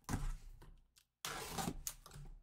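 A small cardboard box being slit open with a box cutter and handled, in two scraping strokes of about a second each.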